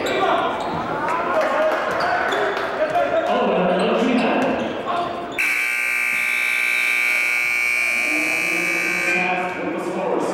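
Basketball dribbling on a hardwood gym floor among crowd voices, then about five seconds in the scoreboard horn sounds one steady blare of nearly four seconds as the game clock runs out.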